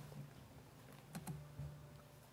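Quiet room tone with a low steady hum and a few faint clicks about a second in: keypresses on a laptop advancing presentation slides.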